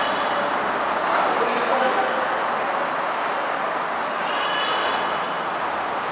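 Motorway traffic passing below at speed: a steady rush of tyres and engines from cars and lorries, swelling a little as vehicles go by.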